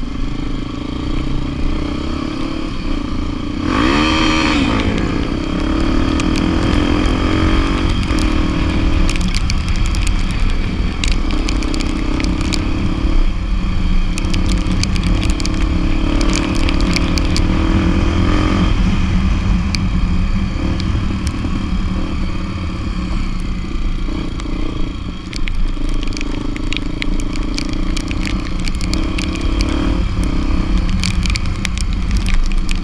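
Motorcycle engine running steadily under way, with a brief rev that rises and falls about four seconds in. Frequent sharp rattles and clicks come from riding over the rough dirt road.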